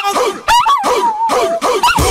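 A high voice in short phrases that slide up and down in pitch, song-like, with no instruments.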